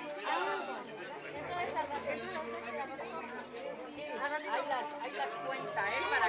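Indistinct chatter of several people talking at once, with overlapping voices and no single clear speaker.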